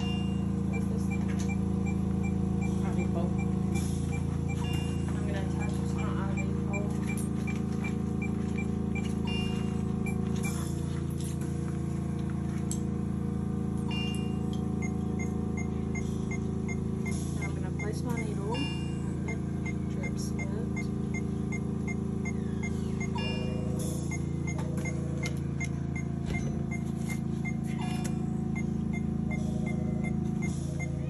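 Steady low hum with a fast, regular high-pitched beep or tick about three times a second, pausing briefly partway through, over scattered light knocks and rustles of handling.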